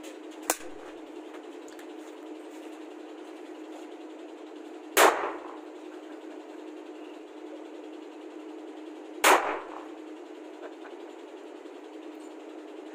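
Two single shots from an M4-style rifle firing film-shooting blank cartridges, about four seconds apart, each a sharp bang with a short echo, after a smaller click about half a second in.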